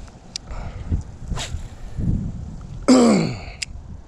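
A man's loud sigh, falling in pitch, about three seconds in, over the low rumble of wind on the microphone.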